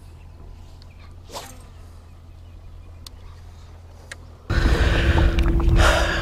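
Faint steady low hum, then about four and a half seconds in a sudden switch to loud wind buffeting the microphone, with a steady droning tone running under it.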